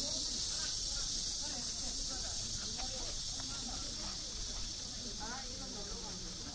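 Outdoor ambience: a steady high-pitched hiss, with people talking faintly in the distance.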